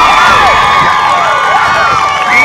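A team of young players cheering and shouting together in celebration, many voices overlapping.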